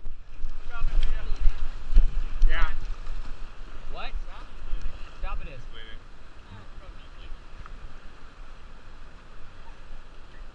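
Whitewater rushing around an inflatable raft, with wind buffeting a wrist-mounted camera's microphone. A few short shouted cries rise over it in the first six seconds. The noise eases from about six seconds in.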